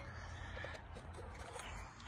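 Quiet background: a low steady hum with a faint haze and a few tiny ticks, and no distinct event.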